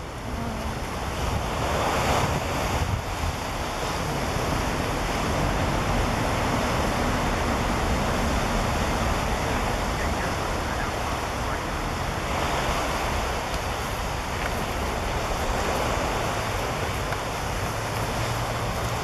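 Surf breaking and washing onto the beach, a steady rushing noise that swells now and then, with wind rumbling on the microphone.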